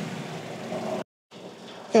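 Vauxhall Corsa SRi engine idling steadily, heard from beneath the car. The sound is freshly refilled with oil after a sump reseal. The sound drops out completely for a moment about a second in, then the running continues more quietly.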